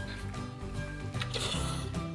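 Background music with a short, hissy slurp of udon noodles a little past the middle.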